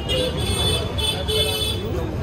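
Busy street traffic with vehicle horns tooting several times in quick succession over a steady rumble of engines and faint background chatter.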